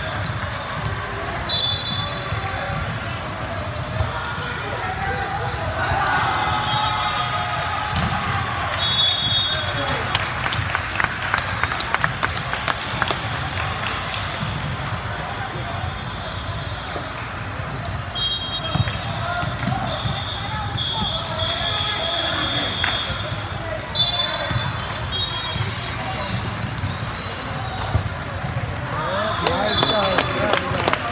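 Busy indoor volleyball gym: volleyballs being hit and bouncing on a hardwood floor in a steady scatter of sharp knocks, with short high-pitched squeaks dotted throughout and background voices of players and spectators, all in the echo of a large hall.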